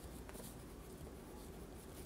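Faint scratching of a pen writing on a paper notepad, over quiet room tone.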